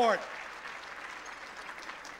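Audience applauding steadily, with the last syllable of a man's spoken word at the very start.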